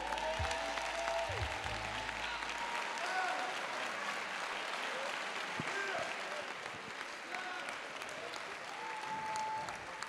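A standing congregation applauding and cheering, with scattered shouts over steady clapping. A low held music note underneath fades out about three seconds in.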